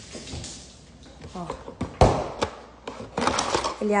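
A cardboard carton of frozen salmon is set down hard on a granite countertop with a sharp knock about halfway through, then a lighter knock. The cardboard lid then scrapes and rustles as it is pulled open.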